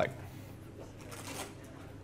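Faint room noise in a lecture pause, with a soft rustle about a second in.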